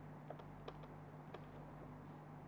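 Faint scattered clicks of a stylus tapping on a pen tablet while handwriting, about four or five light taps over a steady low hum.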